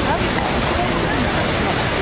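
Magic Fountain of Montjuïc's tall water jets and arching sprays falling back into the basin with a steady rushing splash. The fountain is running without its usual music, so the water itself is heard, with crowd voices faint beneath it.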